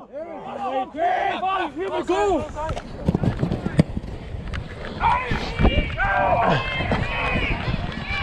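Rugby players shouting calls across the pitch, then the running footsteps of the referee wearing the camera, with a low rumble on the body-worn microphone from about three seconds in. A single sharp click near the four-second mark.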